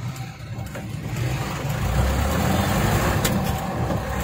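Truck engine heard from inside the cab, growing louder from about a second in as the truck pulls away and gathers speed on a dirt road.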